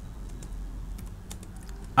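Computer keyboard typing: scattered key clicks, several in quick succession in the second half.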